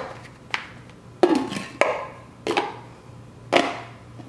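Plastic lunch-jar containers and a stainless steel outer jar knocking and clicking together as they are handled and fitted back together: about five sharp knocks, roughly half a second to a second apart.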